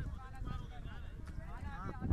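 Voices talking indistinctly over a steady low rumble.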